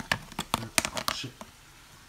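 A quick run of light clicks and taps from a plastic food container being handled, in about the first second and a half.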